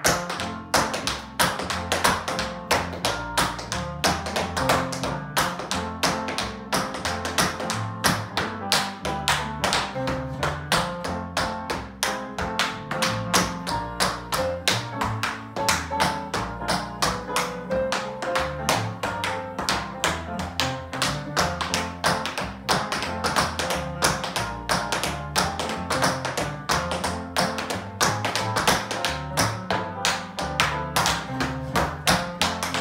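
Metal-plated tap shoes striking a wooden floor in a quick, continuous rhythm of many taps a second, dancing a sped-up shim sham routine over recorded backing music.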